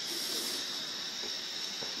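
Gas-cartridge Bunsen burner burning with a steady hiss of gas and flame. A brief louder rush of hiss at the start as the valve is adjusted.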